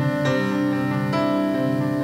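Keyboard playing slow, sustained chords, with a new chord coming in about a second in.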